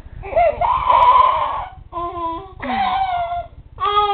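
A baby making loud, pitched vocal noises in four calls: a long, loudest one first, then three shorter ones.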